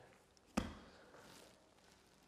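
A single knock about half a second in as the ball of sourdough dough is turned and set down on the worktop, followed by a faint, short scuff of the dough dragged across the floured surface.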